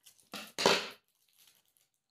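A small plastic sachet being cut open with scissors: two short crunchy crackles close together about half a second in, the second louder, then a few faint ticks of plastic.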